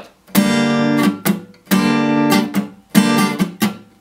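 Acoustic guitar strummed on a G minor barre chord: three ringing strums, each followed by quick strokes on strings damped by the fretting hand so they do not ring. This is a down-up-down pattern alternating sounding and muted strings.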